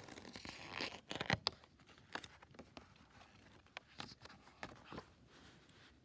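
Paper rustling and light taps as a paperback picture book's pages and cover are handled, the book closed and turned over, with the loudest rustle about a second in.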